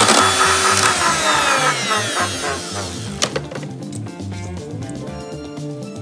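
Electric hand mixer whisking egg whites in a metal bowl, its whine falling in pitch and fading over the first few seconds as the beaters slow. Background music with a steady bass line plays throughout.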